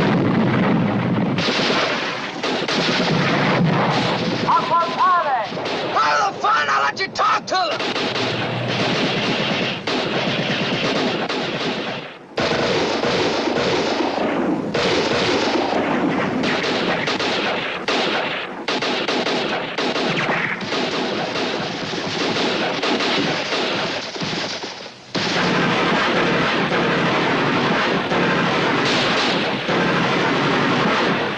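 War-film battle sound effects: dense rifle and machine-gun fire mixed with explosions, loud and nearly continuous, dropping out briefly twice.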